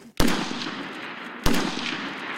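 Two single shots from a Kalashnikov assault rifle, about a second and a quarter apart, each a sharp crack followed by a long echo that dies away. They are aimed shots fired one at a time at a firing line.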